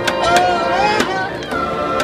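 Double reed ensemble of bassoons and oboes playing a sustained melody, punctuated by several sharp drum strikes on a trash can.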